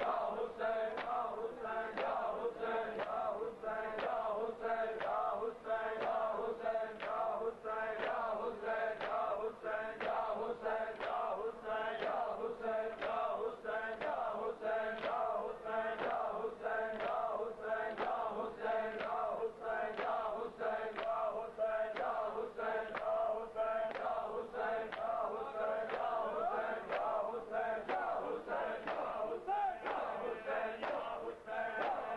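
Men's voices chanting a noha, a Shia lament, over a steady beat of open hands slapping bare chests in matam, about one and a half strikes a second.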